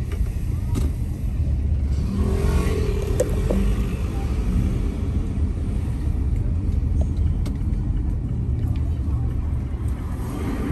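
Steady low rumble of a car driving slowly along a street: engine and tyre noise. A brief voice-like sound rises over it between about two and three and a half seconds in.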